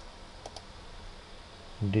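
Two quick computer mouse clicks close together about half a second in; a man's voice starts just at the end.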